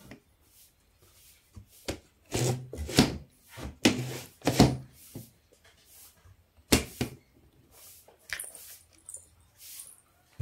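Wooden cupboard doors knocked and rattled as a small child tugs at their metal handles: a string of sharp wooden knocks and thuds, most of them between about two and seven seconds in, with softer clicks in between.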